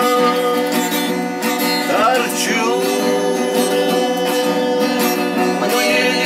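Acoustic guitar played in a song, with a voice holding long sung notes over it.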